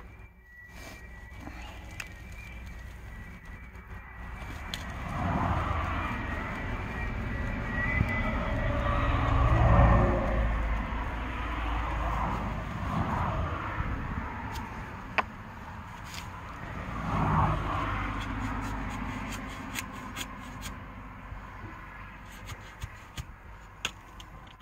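Spade being pushed and levered into hard, compacted soil, with scraping and a few sharp clicks of the blade. A low rumble swells and fades through the middle, loudest about ten seconds in and again near the eighteenth second.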